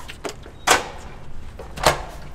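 A metal-framed glass entrance door being opened: two loud sharp clacks about a second apart, the second near the end, with a few faint clicks before them.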